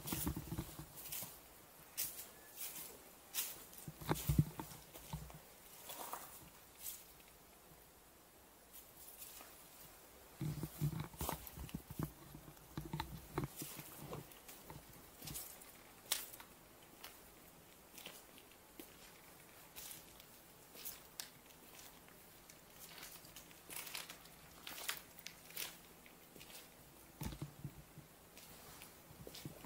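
Footsteps crunching over dry leaves, twigs and gravelly debris, uneven in pace. A few clusters of louder steps and low knocks come near the start, about four seconds in, between about ten and thirteen seconds in, and near the end.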